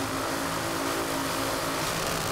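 Two Top Alcohol Funny Cars' supercharged methanol-burning V8 engines idling steadily at the starting line, holding one even pitch while the cars stage.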